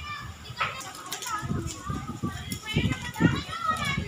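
Children's voices: high-pitched calls and chatter of children playing, with a rising cluster of calls late on.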